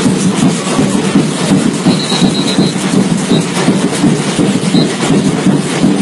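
Samba batucada percussion ensemble playing a fast, steady, dense groove. A short high whistle sounds about two seconds in.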